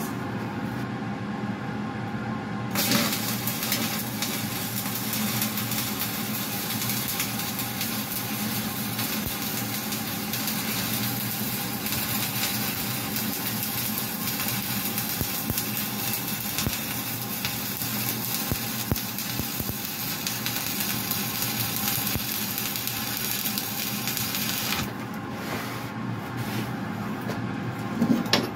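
Stick (manual metal arc) welding arc crackling and sizzling steadily as a final weld run is laid. The arc strikes about three seconds in and breaks off sharply a few seconds before the end, over a steady machine hum.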